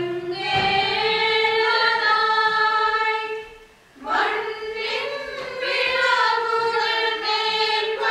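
A choir singing a West Syriac-rite liturgical chant with long held notes. The singing breaks off briefly about three and a half seconds in, then resumes.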